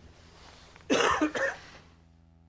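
A person coughing: two short coughs in quick succession about a second in, over quiet room tone.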